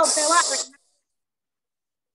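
A voice over a video call saying the word "stove", with a loud hiss over it. It cuts to dead silence after under a second.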